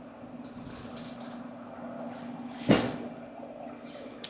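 Pieced fabric table-runner top being handled and held up, rustling softly, with one sharp rustle of the fabric a little under three seconds in; a steady low hum runs underneath.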